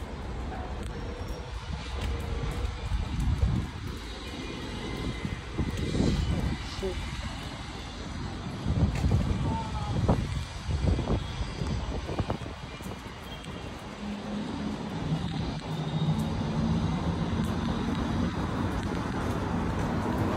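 City street ambience: a steady rumble of traffic with the voices of people around.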